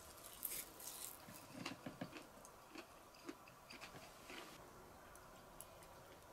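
Quiet, scattered clicks and light knocks of tableware being handled: a small ceramic plate and wooden chopsticks set down on a wooden table, with a cluster of soft knocks about a second and a half in.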